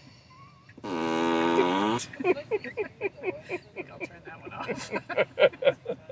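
Tesla Emissions Testing Mode 'Ludicrous Fart' prank sound played through the car's cabin speakers, set off by the turn signal: one buzzy fart about a second long that drops in pitch and then holds.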